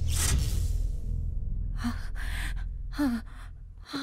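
Short, breathy gasps from a person, starting about two seconds in, one carrying a brief falling voiced note. They sit over a low, steady music drone that fades and cuts out near the end. It opens with a sharp, noisy rush of breath or air.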